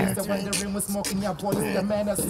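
A young man rapping, the words delivered in short, clipped, rhythmic phrases.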